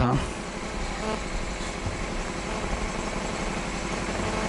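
Steady background drone and hiss with a faint low hum, picked up through the microphone between chanted lines.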